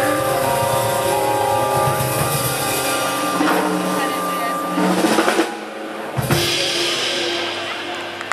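A live band playing: a drum kit under sustained instrumental notes, ending in a cluster of loud drum hits about five seconds in, after which the music drops away sharply.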